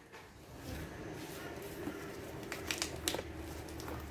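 Faint rustling and a few short crackles from dry turmeric leaves and potting soil as the plant is gripped at its base to be pulled from its pot, over a low steady hum.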